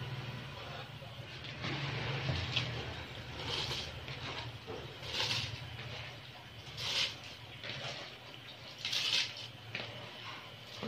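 Handfuls of soaked rice tipped from a bowl of water into a pot of bubbling broth, giving about four short wet splashes roughly two seconds apart over a steady low hum.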